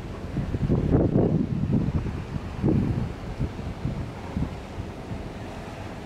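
Wind buffeting the microphone in uneven gusts, strongest about a second in, then settling into a steadier low rumble.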